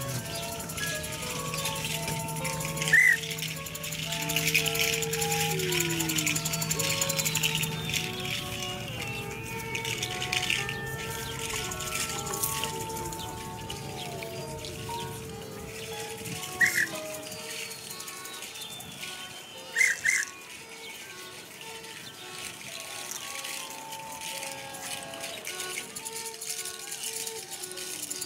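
Free-improvised experimental ensemble music: scattered short electronic beeps at many different pitches over a held tone, with a few sliding pitch glides. Three sharp, high squeaks stand out, at about 3 s, 17 s and 20 s, the last a quick double.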